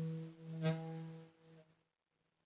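Acoustic guitar played slowly: a plucked note rings out and decays, a new note is plucked about two-thirds of a second in, and the sound fades away near the end.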